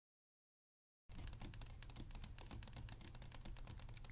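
Fingernails and fingertips tapping and brushing on a book page: many light, quick taps over a low steady hum, starting about a second in after silence.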